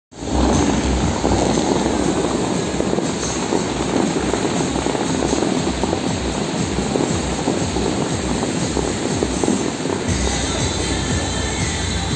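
Bellagio fountain's many water jets rushing and spraying, a loud steady rumble of falling water, with the show's music playing under it.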